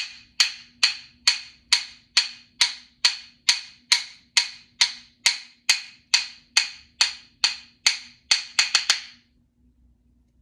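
A pair of rhythm sticks struck together in a steady, fast beat of about two and a half clicks a second, keeping time for hopping. Near the end comes a quick flurry of four strikes, and then they stop.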